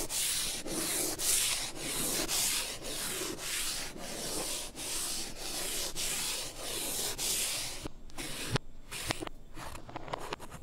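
Chalk on a blackboard being rubbed off with an eraser, the sound played in reverse: quick back-and-forth strokes about three a second, stopping about eight seconds in. Then a few sharp taps of a chalk stick against the board.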